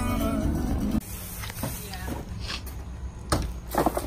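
Pop music with singing from a car stereo, with a laugh, cut off abruptly about a second in. After that, a quieter steady low hum with a couple of short sharp clicks near the end.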